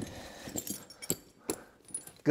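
Heavy steel tractor tire chain clinking several times, in sharp separate clicks, as the links are handled and settled over the tire's lugs.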